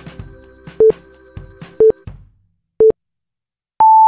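Countdown timer beeping: three short, low beeps a second apart, then one longer, higher beep as it reaches zero. Background music fades out under the first beeps.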